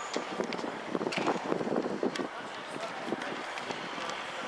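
Voices of people talking on a busy pedestrian street, with footsteps on paving and light wind on the microphone.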